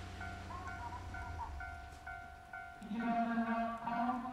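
Station platform loudspeaker playing an electronic chime melody. A short bell-like note repeats a few times a second over a held tone, then about three seconds in a fuller tune with a low part comes in.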